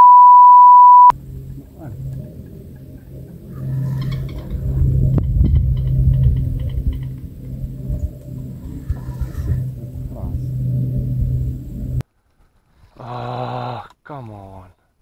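A loud, steady one-second censor bleep at a single pitch, which replaces all other sound. It is followed by a steady low rumble with faint scattered sounds while a carp is played on the rod.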